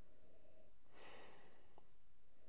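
Faint, long breath drawn in through the nose over a whisky tasting glass while nosing the dram, starting about a second in, over low room hiss.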